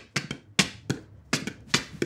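A percussive reggaeton beat of sharp taps and clicks, about four a second in an uneven, syncopated pattern.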